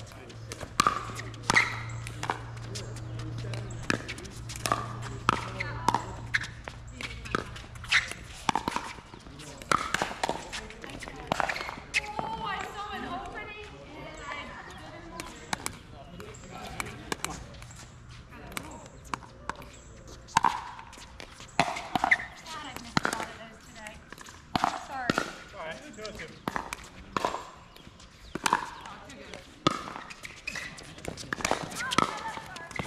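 Pickleball rallies: repeated sharp pops of paddles striking a plastic pickleball, with the ball bouncing on the hard court, coming in quick runs of hits with a lull in the middle.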